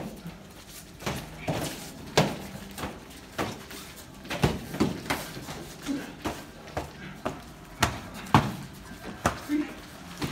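Padded training swords striking padded shields and each other in sparring: irregular sharp knocks, at times a few a second, the loudest a little after eight seconds in.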